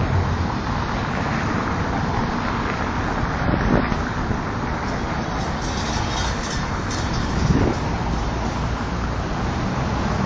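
Steady city street traffic noise, with two brief louder moments, a little before four seconds in and again about seven and a half seconds in.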